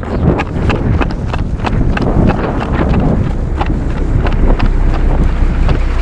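Wind buffeting the camera microphone while the wearer runs, with footsteps and jostling backpack gear thudding about three times a second. A truck engine runs low underneath near the end.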